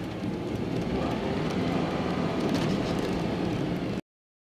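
Steady road and engine noise inside a moving car's cabin, with a few faint light clicks about two and a half seconds in.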